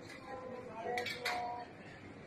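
Pedestrian street ambience: passers-by talking, with a couple of sharp clinks about a second in.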